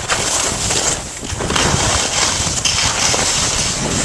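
Skis sliding and scraping over snow on a downhill run, with wind rushing over the microphone. The noise is steady and eases briefly about a second in.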